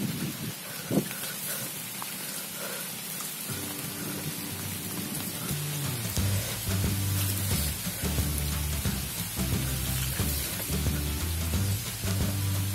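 Steady hiss of rain and of a bicycle rolling over a wet dirt path. Background music comes in a few seconds in, and its bass line is clearly heard from about halfway.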